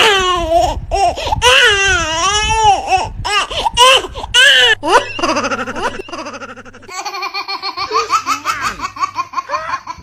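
High-pitched laughter, its pitch swooping up and down in long waves for the first few seconds, then breaking into shorter, choppier laughs.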